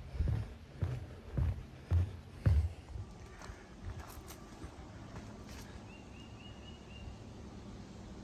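Footsteps on a wooden boardwalk, about two steps a second, for the first three seconds. After that there is quiet outdoor ambience with a faint, high, short repeated chirping a little after the middle.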